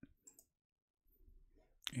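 A few faint computer mouse clicks near the start, then near quiet.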